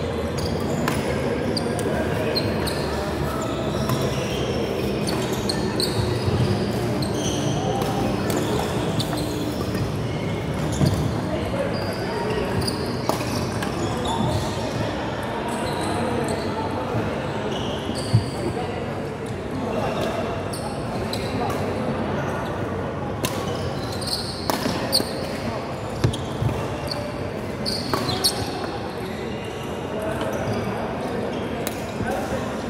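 Badminton being played on a wooden indoor court: sharp cracks of rackets hitting the shuttlecock and short squeaks of shoes on the floor, over indistinct voices echoing in a large hall.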